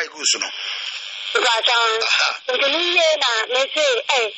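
A voice speaking, heard through the thin, band-limited sound of a radio or phone line, with a steady hiss behind it.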